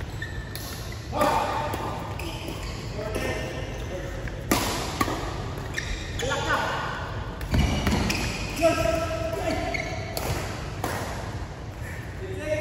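Badminton rally in a large, echoing sports hall: rackets hit the shuttlecock in sharp strikes every one to three seconds, with shoes squeaking on the court floor and players' voices in the background.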